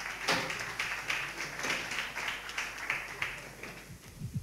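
Small audience applauding: a dense patter of hand claps that thins out and stops near the end.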